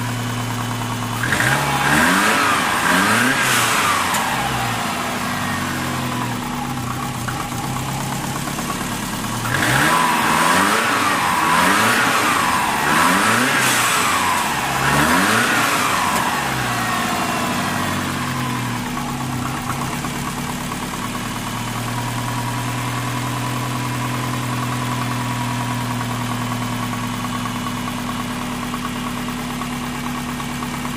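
Compound-turbocharged Subaru flat-four (GT35 and TD05 turbos) running on its first start after a coolant refill. It idles steadily, is blipped up a few times about a second in, then revved several more times from about ten seconds in before settling back to idle.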